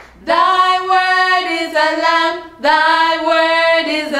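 A woman and a girl singing a slow worship song together without accompaniment, in two long held phrases with a short breath between them about two and a half seconds in.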